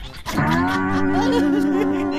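A man's long, loud wail, comic crying: the voice swoops up and then holds one note for nearly two seconds.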